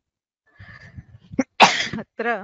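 A woman sneezes once, a sharp, loud burst near the end after a faint breathy lead-in.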